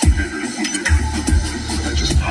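Electronic dance music with a heavy, deep bass line, cutting in suddenly.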